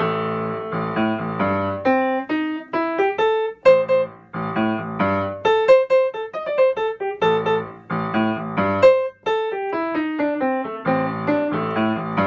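Piano playing a jazz blues improvisation: a repeating left-hand bass-line riff with simple right-hand phrases and held notes placed at the beginning of the bar.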